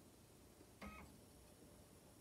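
Near silence: room tone, broken once just under a second in by a brief, faint electronic beep.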